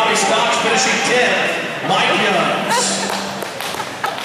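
Indistinct talking among people in a large hall.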